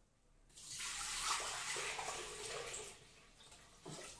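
Water poured from a plastic measuring jug into the stainless-steel mixing bowl of a Monsieur Cuisine Connect food processor. A steady splashing pour starts about half a second in and tails off about three seconds in.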